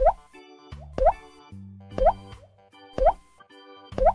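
Cartoon "bloop" pop sound effects, a short rising blip about once a second, each marking a Play-Doh tub popping into view, over background children's keyboard music.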